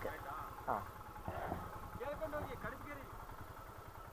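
A motorcycle engine idling with a low, steady rumble, with faint voices calling at a distance over it.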